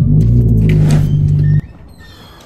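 A car engine running loudly with a steady low drone just after being started, which stops abruptly about three-quarters of the way through.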